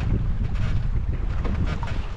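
Wind buffeting the microphone in a steady low rumble, over sea water lapping around a small open boat, with a few short splashy bursts.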